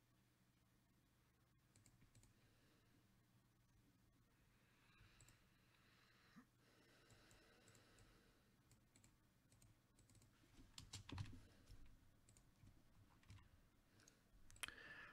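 Near silence: room tone, broken by a few faint clicks and soft knocks, most of them in a short cluster about eleven seconds in.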